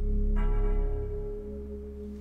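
Background score: a held low drone, with a bright bell-like tone coming in about half a second in and fading away after about a second.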